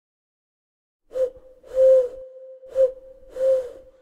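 Four breathy, hoot-like notes, all at the same steady pitch, starting about a second in. The first and third are short, the second and fourth longer. A faint held tone runs between them and fades after the last.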